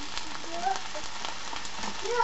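Cabbage frying in oil in a frying pan, a steady sizzle, with a few light clicks as pieces of chikuwa fish cake are tipped in from a stainless steel bowl.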